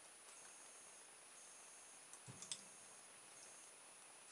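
Faint clicking from a home-made pulse motor's open-air reed switch as the magnet rotor turns and the switch is adjusted with a small screwdriver, with a few sharper clicks and a soft thump about halfway through. A faint high steady tone runs under it.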